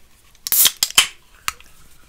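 Handling noises as an aluminium energy drink can is picked up close to the microphone: a few short scrapes and rustles, then a sharp click about a second and a half in.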